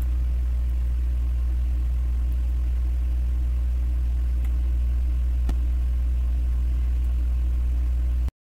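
A steady low hum, loud and unchanging, with a couple of faint clicks partway through.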